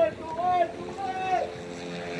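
Three drawn-out shouted calls from people in the first second and a half, over a steady hum.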